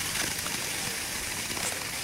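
Nordic skate blades gliding over the canal ice, giving a steady hiss as the skater strides along.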